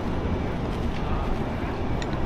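A steady low rumble with a faint hiss of outdoor background noise, even in level throughout.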